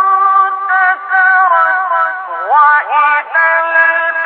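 Mujawwad Quran recitation by a male reciter: one high voice holding long, ornamented notes, with a quick rising run of pitch about halfway through. The recording is old and muffled, with the highs cut off.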